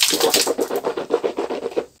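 A person rinsing and swishing water around in the mouth: a rapid, continuous gargling sound. In the scene it is the sound of mouth-rinsing during a fast.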